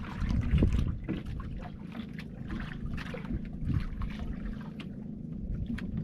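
Sea water slapping and splashing against the hull of a drifting wooden outrigger boat, with wind buffeting the microphone. Short splashes come irregularly throughout, busiest in the first second.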